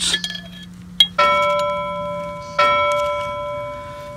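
A bell-like chime rings twice, about a second and a half apart. Each ring starts sharply with a clear set of tones and fades slowly.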